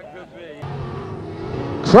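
Dirt modified race cars' engines running on the track, a steady drone that starts a little way in and grows louder over the second half.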